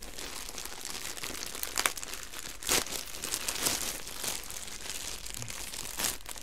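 Clear plastic bag of yarn skeins crinkling and rustling as hands turn it over, with a few louder crackles around the middle.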